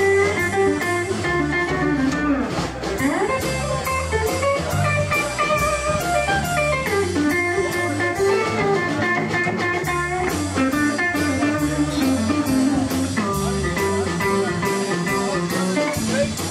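Live electric blues band playing an instrumental passage: an electric guitar plays lead lines with bent notes over electric bass and a drum kit keeping a steady cymbal beat.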